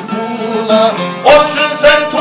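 Çifteli and sharki, two long-necked Albanian lutes, plucked together in a folk tune, with two loud accents in the second half as a man's voice comes in to sing.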